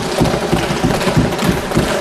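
Many members of parliament thumping their desks in approval, a dense, irregular patter of thuds.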